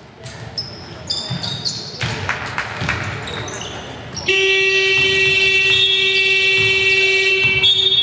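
Basketball shoes squeaking and thudding on a wooden court with ball bounces, then the hall's scoreboard horn sounds one long steady blast of about three seconds, signalling a stoppage in play.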